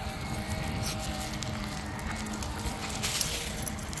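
Steady low background rumble with faint sustained hum tones running under it, and no distinct nearby event.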